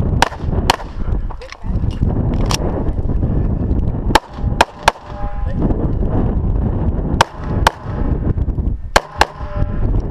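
CZ SP-01 9mm pistol fired close up, about ten shots, mostly in quick pairs about half a second apart with a few fainter shots between. A low rumble runs under the shots.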